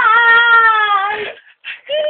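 A woman's voice holding one long, high wailing note for about a second and a half, sliding slightly down in pitch, then breaking into a few short breathy sounds.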